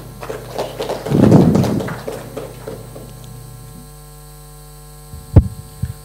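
Steady mains hum from a sound system. About a second in comes a loud burst of noise that fades over the next two seconds, and there is one sharp thump near the end.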